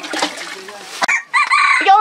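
Water splashing in an aluminium basin for about the first second. Then a rooster crows loudly for the last half-second or so.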